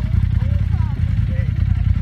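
A side-by-side UTV engine idling steadily, a low, even hum.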